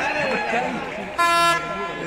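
A short, loud horn toot a little over a second in, cutting through voices from the crowd in the stands.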